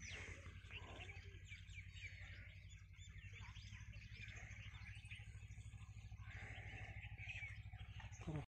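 Faint chirping of small birds, many short calls overlapping, over a low steady hum.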